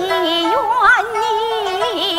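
A woman's voice singing a Yue (Shaoxing) opera phrase over instrumental accompaniment. The line opens with a downward slide, then wavers with a wide vibrato, with a quick rising flourish about a second in.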